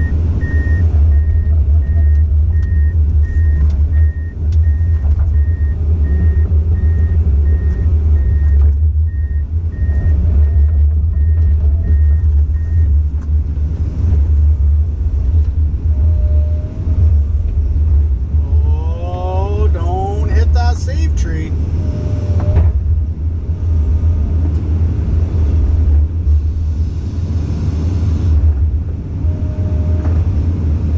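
Komatsu PC 200 hydraulic excavator's diesel engine running steadily with a deep rumble while the boom and bucket work. An electronic beep repeats at an even pace and stops about 13 seconds in.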